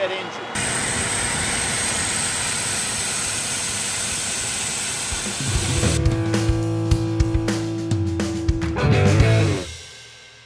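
Trapped air rushing out of a fire engine's intake bleeder valve as a charged supply line is bled before the intake is opened: a loud, steady hiss that starts suddenly about half a second in and lasts about five seconds. Music with guitar and cymbals follows.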